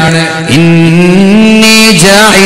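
A man chanting Quranic Arabic in a melodic recitation style, holding one long note that steps up slightly in pitch near the end.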